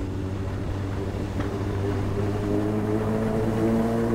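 Honda Hornet motorcycle engine running steadily at low speed, its pitch rising slightly in the second half as the bike gently speeds up.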